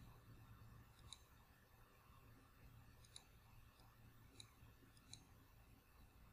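Four faint computer mouse clicks, spaced a second or two apart, over a low steady hum.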